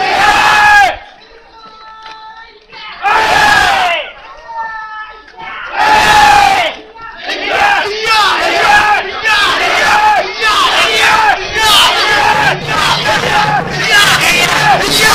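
Crowd of festival float pullers shouting together as they haul on the rope. There are three long unison shouts about three seconds apart, with a quieter steady held note between them. From about seven seconds in, the shouting turns to a rapid, rhythmic run of cries.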